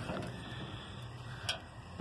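Quiet background with a faint steady low hum and a single short click about one and a half seconds in.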